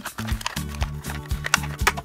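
Upbeat background music with a steady beat, over sharp irregular clicks and crackles of a plastic blister pack being torn open by hand.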